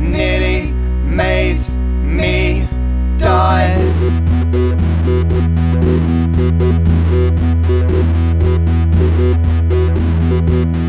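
A pop song: a voice singing over strummed guitar, then about three seconds in the full band comes in, louder, with a steady beat and a sustained bass.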